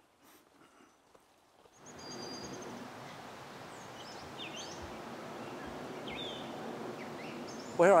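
Outdoor ambience of a steady background hiss with several birds chirping and calling, starting about two seconds in after near silence.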